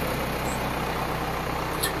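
SLC-John Deere 6300 tractor's diesel engine idling steadily, a low even hum.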